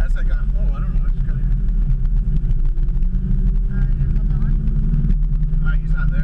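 Car engine running at low speed, heard from inside the cabin: a deep, steady rumble whose pitch drops slightly about five seconds in. Faint voices can be heard over it.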